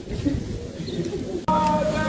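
A crowd of people murmuring and talking outdoors. About a second and a half in, the sound cuts abruptly to a louder group of people singing a hymn in long held notes.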